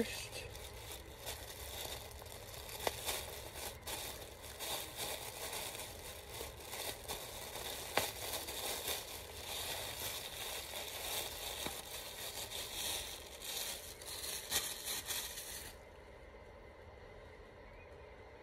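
Plastic packaging crinkling and rustling as it is handled and opened, with many small sharp crackles, stopping near the end.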